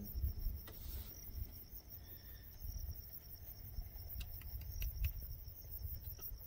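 Faint, steady insect chirring from the grassland, with a low rumble underneath and a few soft clicks.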